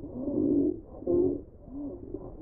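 Remco Baby Laugh-A-Lot doll laughing: a run of pitched "ha-ha" syllables, a brief break, a second loud burst about a second in, then fainter laughs.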